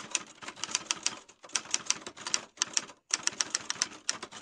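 Typing sound effect: a rapid run of sharp key clicks, about seven a second, with two short pauses, as on-screen text types itself out.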